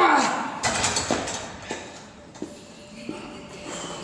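A man's strained groan of effort under a heavy lift, falling in pitch and ending just after the start. It is followed by gym room noise with background music and a few light knocks.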